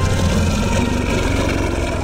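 Deep, rumbling growl of a Tyrannosaurus rex sound effect, with music over it.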